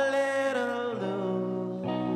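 Live band music: a male singer slides into a long held note on the word "far" over guitar. The note ends about a second in and the guitar chords carry on.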